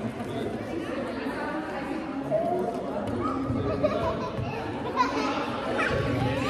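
Indistinct chatter of several voices in a large gymnasium, with no single clear speaker.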